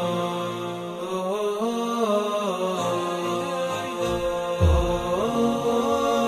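Background music: a melodic vocal chant sung in long held notes that glide between pitches. A brief deep falling tone sounds about halfway through.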